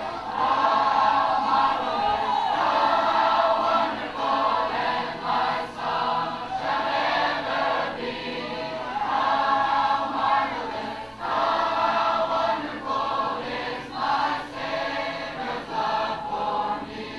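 Recorded choral music: a choir singing long, held phrases with short breaks between them.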